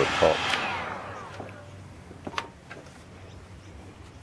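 Heat gun blowing, switched off about half a second in, its fan whine falling away over the next second as it spins down; then a few faint clicks and taps.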